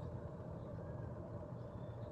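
Quiet outdoor ambience: a steady low rumble with no distinct event.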